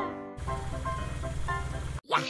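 A cartoon vehicle-engine sound effect: a low, rapid, steady putter, like a bus engine running, starts about a third of a second in under soft background music.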